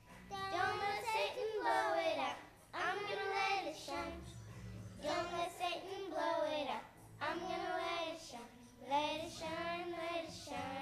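Young girls singing together into a microphone, a slow song in short phrases of a second or two with brief breaks between them.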